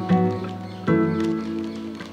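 Instrumental music: sustained chords, with a new chord struck about a second in and fading.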